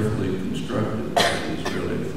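A man talking into a microphone, with one short, sharp cough a little over a second in.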